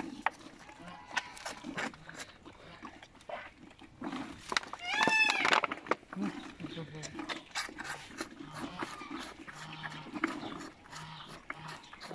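Moose calves suckling milk and chewing at a fence: wet sucking and smacking clicks throughout, with one high, drawn-out squealing call from a calf about five seconds in, rising and then falling in pitch.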